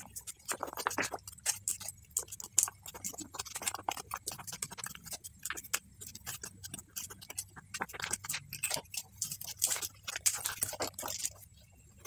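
Thin plastic pouch of sweetened condensed milk crinkling and crackling in the hands as it is squeezed out, a quick, irregular run of small clicks that stops just before the end.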